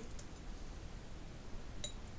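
Glass jar clinking once near the end, a light ringing tap against the glass, with a fainter tick shortly after the start, as herb sprigs are packed into the jar.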